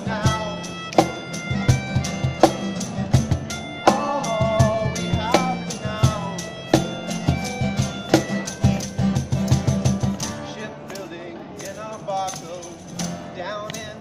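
Street band playing an instrumental stretch of a song: acoustic guitars strummed over a steady cajón beat, with long held notes from a wind instrument and a few brief vocal lines. The playing thins out and drops in level after about ten seconds.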